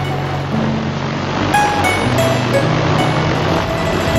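Background music of held notes, with the rushing whir of a hexacopter drone's propellers under it, loudest in the middle and fading near the end.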